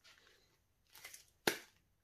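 Faint quiet noise, then a single short, sharp click about one and a half seconds in.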